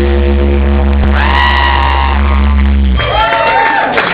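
A live indie-folk band's final chord rings on with bass and guitars, with a high voice held over it for about a second. The chord cuts off about three seconds in, and the audience whoops and cheers.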